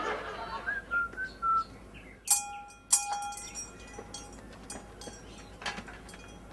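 A person whistles a few short notes, then a doorbell chime rings twice, ding-dong, each tone ringing on and fading.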